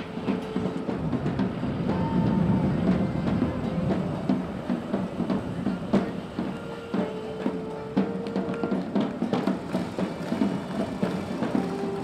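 Street band music: drums beating steadily under an accordion holding long notes.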